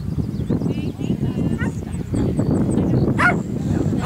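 A horse moving over the cross-country course with a steady low rumble of hooves and ground noise, and two short yelps near the end, about a second apart.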